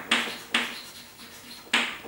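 Chalk striking and scraping on a blackboard in three short, sharp strokes, the last one near the end.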